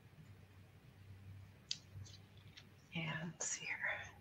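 Quiet room tone with a faint low hum and a few light clicks, then a brief soft, whispered murmur of a woman's voice about three seconds in.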